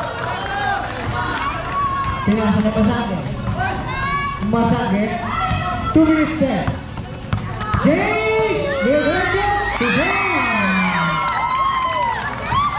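Spectators and players at a basketball game shouting and cheering, many voices at once, busiest and loudest near the end.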